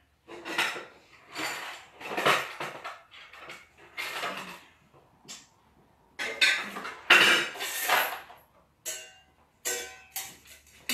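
Small metal containers clattering and clanking as they are handled, picked up and set down, in a series of irregular bursts with short pauses between.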